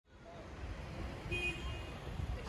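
City street traffic ambience: a steady low rumble of passing vehicles, fading in at the start, with a brief high-pitched tone around the middle.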